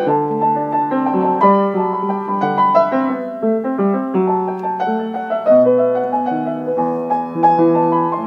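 Upright piano played in a flowing improvisation in a classical style, with sustained bass notes under moving chords and melody notes. Recorded through a mobile phone's microphone.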